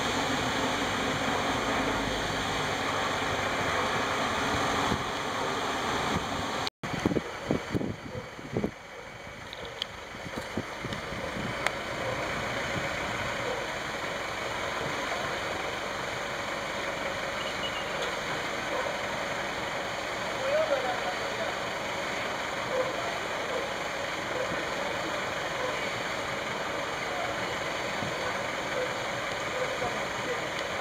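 Floodwater rushing steadily through a street. In the first seven seconds a vehicle moves through deep water with its engine running and water splashing; after a sudden cut come a few seconds of scattered knocks and splashes, then the steady rush of water.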